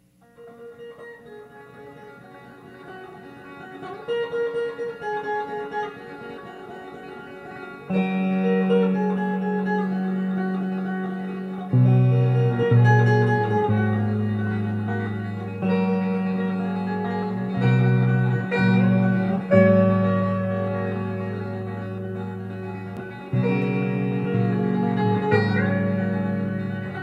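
Instrumental folk music: picked guitar starts quietly and builds, with steady low sustained notes coming in about eight seconds in and the music growing louder.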